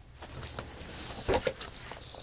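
A deck of oracle cards handled and shuffled in the hands: a papery rustle with several light clicks.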